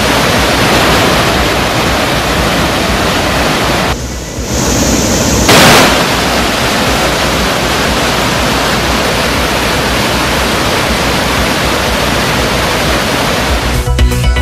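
The Cauvery in flood pouring over the Hogenakkal falls: a steady, dense roar of rushing water, with a short dip about four seconds in and a brief louder surge about five and a half seconds in. The river is running high, at an inflow of about 70,000 cubic feet per second.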